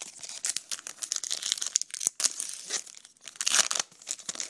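Foil trading-card packs crinkling and rustling as they are handled in an open cardboard hobby box. The crackle is irregular, with a louder bout about three and a half seconds in.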